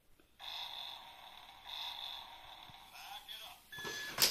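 The small electric motor and gears of a toy CAT forklift whirring steadily for about three seconds as the forks lower a box, starting about half a second in. A child's voice comes in near the end.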